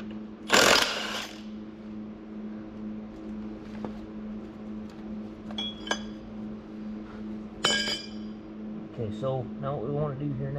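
A short burst from a cordless impact wrench about half a second in, then metal-on-metal clinks and a ringing clank near the end as heavy steel parts from an Eaton RTLO16913A transmission's auxiliary section are handled and set down, over a steady hum.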